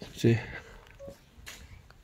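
A man's voice makes a brief sound, then a single short beep about a second in.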